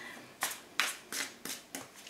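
A tarot deck being shuffled by hand: about five short swishes of cards sliding against cards, roughly three a second.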